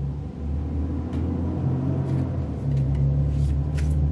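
A low, steady mechanical rumble with a faint hum, setting in about half a second in.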